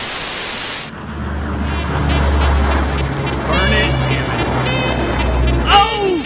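About a second of TV-static hiss, cut off abruptly, then the steady low drone of aircraft overhead, with people's voices calling out over it twice.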